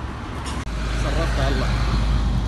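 Street traffic noise with a low engine rumble. It cuts out abruptly under a second in and returns with a louder low rumble, under a man's voice.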